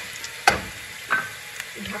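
Diced potatoes sizzling as they fry in hot oil in a pan, with two sharp clacks of a utensil against the pan, the first and loudest about half a second in, the second about a second in.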